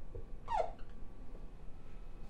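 Dry-erase marker squeaking once on a whiteboard: a short falling squeak about half a second in, then faint room tone.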